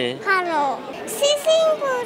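A young child speaking in a high voice, rising and falling in pitch.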